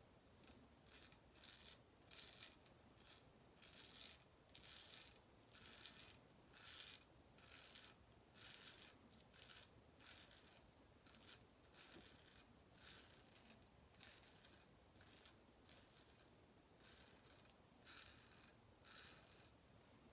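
Heljestrand MK No. 4 straight razor scraping through lathered stubble on the first pass: a run of faint, short strokes, about two a second, with a short pause near the end.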